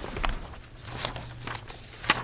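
Paper pages in a ring binder being leafed through close to a desk microphone: irregular rustles and short crackles, the strongest just after the start, over a steady low hum.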